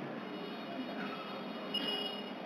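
A pause in speech: low room tone of the hall, with a faint steady high-pitched whine.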